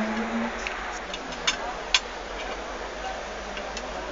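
Mussel shells clicking against each other as they are handled and eaten: a quick run of light clicks through the first two seconds, the sharpest about two seconds in, then a few fainter ones near the end, over steady background noise.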